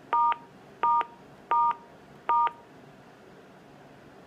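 Four touch-tone (DTMF) beeps from a Panasonic desk phone's keypad, each about a third of a second long and about three-quarters of a second apart. All four are the same pair of tones: the star key pressed four times in a row.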